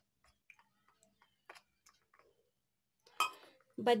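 Faint, scattered light clicks and taps of steel utensils: a spoon and tumbler knocking against a steel bowl while flour and water are stirred into batter.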